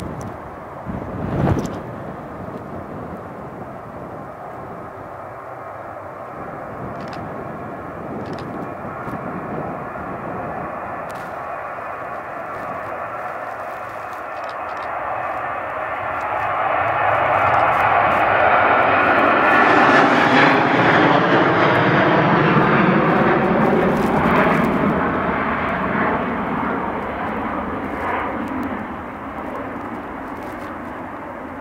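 Ryanair Boeing 737 jet at takeoff thrust, rising in volume as it lifts off and climbs out overhead, loudest a little past the middle, then easing as it climbs away. A single thump comes about a second and a half in.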